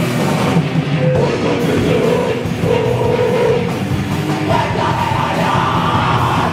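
A live raw punk / d-beat band playing at full volume: electric guitar and a drum kit, loud and dense without a break.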